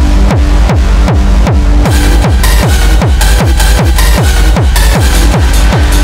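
Hardstyle track with a kick drum hitting about three times a second, each kick falling in pitch. Bright hi-hats and a high synth line join about two seconds in.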